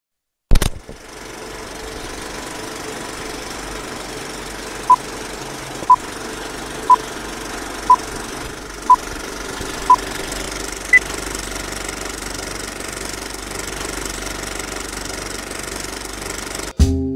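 Old-film countdown leader effect: a steady film-projector running noise with crackle, a sharp click at the start, then six short beeps one per second followed a second later by a single higher-pitched beep.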